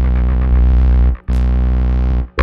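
Experimental electronic music: a sustained low bass note with many overtones that cuts out abruptly for a moment about a second in and comes straight back, with a bright high swoosh as it returns.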